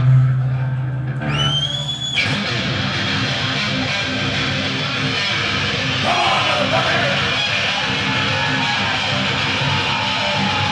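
Heavy metal band playing live, led by distorted electric guitar. A low held note opens, a high guitar squeal sounds a little over a second in, and the full band comes in at about two seconds.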